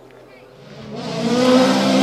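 Rally car approaching fast on a gravel stage: the engine note swells quickly from faint to loud about halfway through and holds loud, with road noise.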